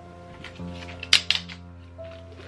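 Background music with sustained tones, and a quick cluster of sharp plastic clicks about a second in as a suction-cup car phone holder's arm and clamp are handled.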